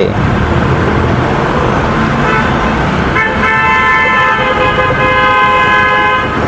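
A vehicle horn held in one long, steady blast from about halfway through, over the low rumble of cars idling in a toll-plaza queue.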